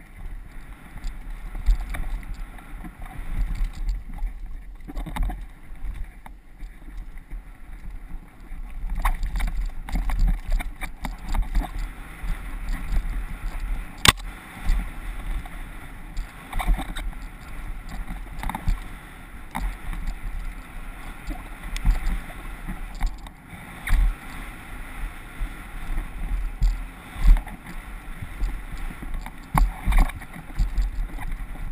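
Mountain bike ridden fast downhill on a dirt trail, heard from a helmet camera: wind buffeting the microphone over an uneven rumble and rattle of tyres and frame on the rough ground, with one sharp clack about fourteen seconds in.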